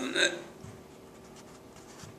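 A man's short vocal sound right at the start, then quiet room tone with a few faint clicks.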